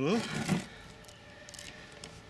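A spoken word ends, followed by a short rustle as a small sealed lead-acid battery and its clip leads are handled and moved on a wooden table. Then only a faint, steady background.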